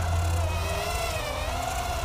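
Eachine EX120 brushed 2S hexacopter in flight: its six small brushed motors and propellers buzzing in a steady whine that wavers gently up and down in pitch.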